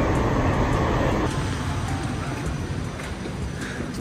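Sound Transit Link light rail train running, heard from inside the car: a steady rumble that eases slightly a little over a second in.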